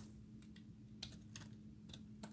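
Utility knife blade cutting into a bar of hard soap, giving a few faint, sharp clicks at uneven intervals as the little cubes crack, over a steady low hum.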